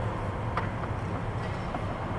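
Electric go-kart running on a concrete track, heard from a camera mounted on the kart: a steady low hum with rattle and tyre noise, and a sharp click about half a second in.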